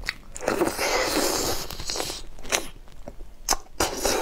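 Close-miked biting and chewing of raw langoustine (Norway lobster) tail: a dense noisy stretch of about two seconds, then wet clicking mouth sounds near the end.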